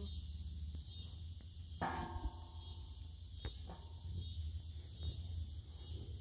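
Quiet rural background: a steady high drone of insects over a low rumble, with one short pitched sound about two seconds in and a faint click a little later.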